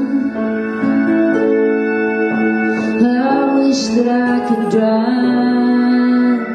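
A folk song played live on grand piano, organ and guitar: sustained chords that change every second or two.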